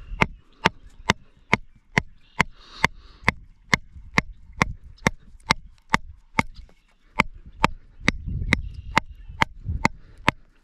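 A wooden branch striking the top of a homemade galvanized-steel angle-iron rod holder, hammering it into the ground. The strikes are sharp and come in a steady rhythm of about two a second.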